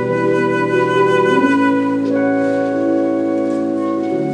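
Live band playing an instrumental passage, a concert flute carrying the melody in sustained notes over keyboard, guitar, bass guitar and drums, with the chords changing twice partway through.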